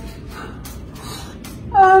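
A woman crying: a series of short sniffs and gasping breaths. Near the end comes a louder, shaky voiced "um" as she tries to start speaking through tears.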